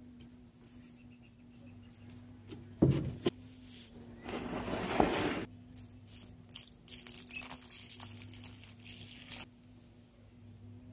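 Fertilizer water poured from a plastic jug onto potting soil in plastic stacking planters, splashing in two spells, about four and seven seconds in. A couple of sharp knocks come just before the first pour.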